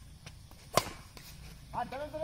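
A badminton racket strikes a shuttlecock: one sharp, loud smack just under a second in. Near the end a player gives a short shout.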